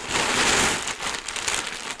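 Plastic shipping bags crinkling loudly as they are handled: a grey poly mailer and clear plastic garment bags rustling against each other in a continuous crackly rustle with brief dips.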